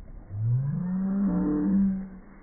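A man's voice in one long, low, drawn-out call, rising in pitch over about a second and then held, a playful build-up while he swings a child by the hands before dropping her into the lake.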